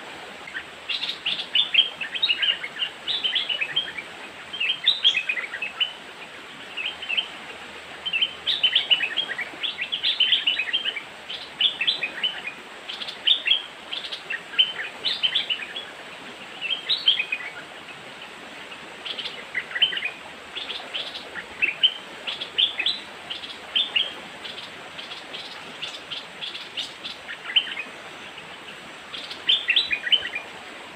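Bulbuls chirping in quick clusters of short, falling notes that come again every second or two, over a faint steady hiss.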